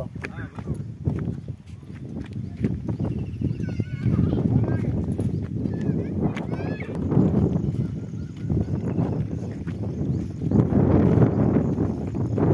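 Wind buffeting the phone's microphone in uneven gusts, with people's voices underneath.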